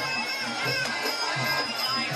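Traditional Thai sarama fight music: a reedy, wavering pi java oboe melody over a steady drum beat.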